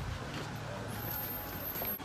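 A steady low hum of a running motor, like an idling vehicle engine, with faint voices in the background.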